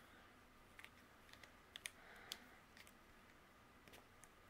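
Near silence with a few faint, scattered light clicks and a brief soft rustle, from hands tying a twine bow on a paper card.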